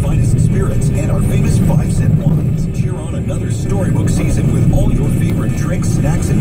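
Steady low road and engine rumble inside a moving car's cabin, with a radio broadcast's voices faintly underneath.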